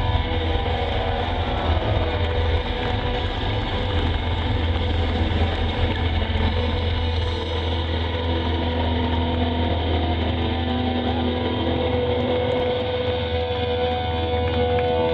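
Live rock band playing loudly through a festival PA, heard from far back in the crowd: a heavy low rumble under sustained, droning guitar notes, with one held note coming up near the end.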